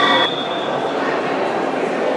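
A referee's long, steady, high whistle, the signal for swimmers to step up onto the starting blocks, ending about a second in, over the constant din of an echoing indoor pool hall.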